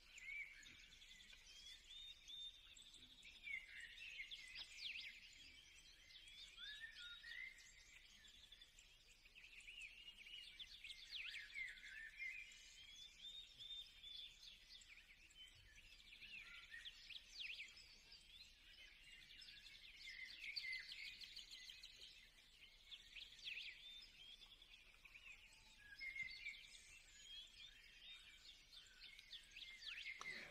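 Near silence with faint, scattered bird chirps throughout.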